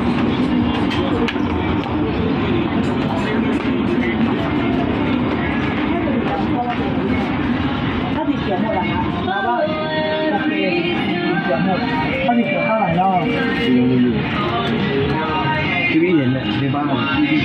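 Shopping-mall ambience: background music playing from the stalls mixed with the indistinct chatter of shoppers and vendors. Clearer voices or melody come through in the second half.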